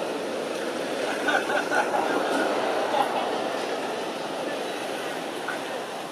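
Indistinct murmur of voices over a steady background noise, with no clear words; a few short higher-pitched sounds stand out about a second and a half in and again around three seconds.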